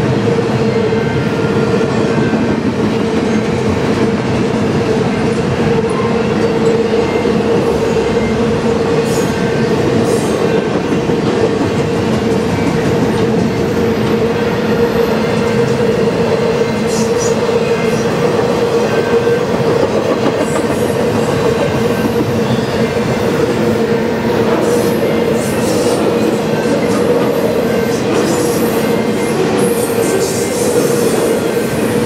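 Double-stack intermodal container cars of a long freight train rolling steadily past on jointed-free rail, a continuous rumble of wheels on rail with a steady tone running underneath.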